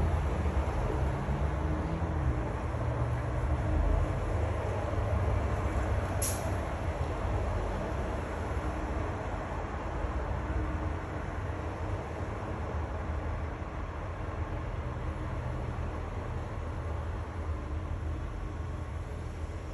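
Steady low rumble of background noise that eases slightly partway through, with one brief faint click about six seconds in.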